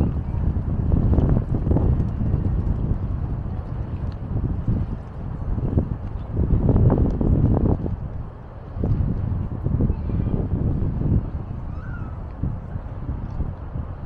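Wind buffeting the microphone in low, rumbling gusts that swell and ease, strongest about halfway through.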